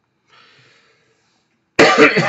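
A man coughing: one sudden, loud cough near the end after a quiet pause. It is part of a recurring cough that keeps interrupting his talk.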